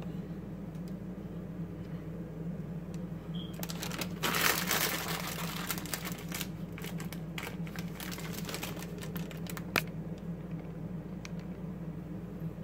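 Plastic package of turkey pepperoni crinkling and crackling as it is handled, a dense flurry about four seconds in, then scattered clicks and a sharp tap near ten seconds. A steady low hum runs underneath.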